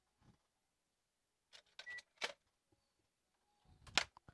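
Faint clicks and taps from a digital multimeter and its test probes being set out and handled, with one brief faint beep about two seconds in and a sharper click near the end.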